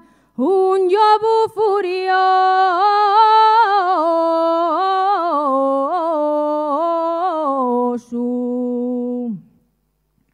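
A woman singing an Asturian tonada unaccompanied, drawing out the vowels in a long line with quick ornamental turns of pitch. After a brief break about eight seconds in, she holds a low note that falls away and ends about a second and a half later.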